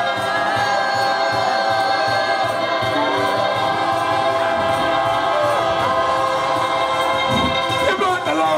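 Live ukulele band strumming, with many voices singing together in long held notes.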